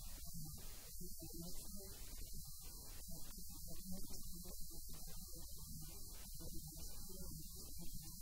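Steady low electrical hum, with a voice coming through in choppy, broken-up fragments that are too garbled to make out words.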